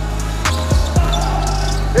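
A basketball dribbled on a hardwood court, bouncing a couple of times, over a steady background music track with deep bass.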